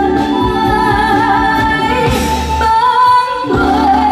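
Woman singing a long held note with vibrato into a microphone over accompanying music. The low accompaniment drops away for about a second around three seconds in while the voice carries on, gliding up.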